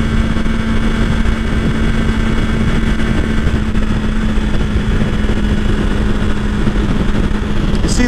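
BMW S1000XR's inline-four engine running at a steady highway cruise, holding one constant pitch, under heavy wind and road noise on the microphone.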